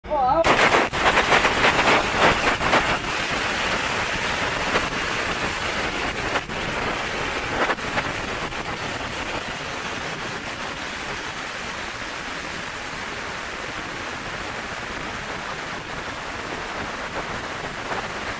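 A long string of firecrackers going off in a rapid, continuous crackle. It is loudest for the first few seconds, then runs on steadily and somewhat quieter.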